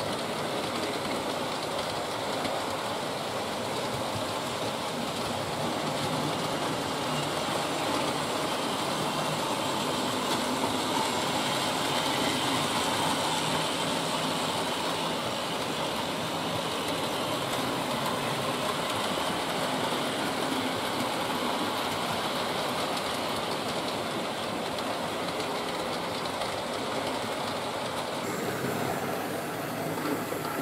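Hornby Dublo model trains running on two-rail and three-rail metal track: a steady whirring of the locomotives' electric motors and a rattling of wheels on the rails. It swells slightly in the middle as the trains pass close.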